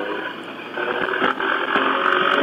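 Motorcycle engine running steadily under way, a hum of several steady tones with road and wind noise, growing a little louder about a second in.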